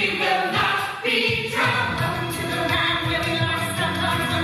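Ensemble of teenage voices singing a musical theatre song together over instrumental accompaniment, holding long notes with a brief break about a second in.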